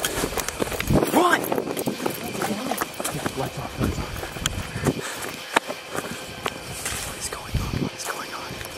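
Hurried footsteps on a dirt trail, irregular short steps, with low voices now and then.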